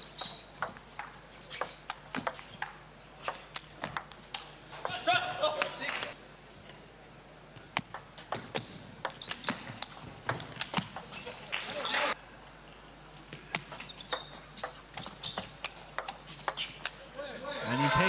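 Table tennis rallies: the celluloid ball clicking sharply and irregularly off the bats and the table, with two short louder stretches of crowd noise, about a third of the way in and again about two-thirds of the way in.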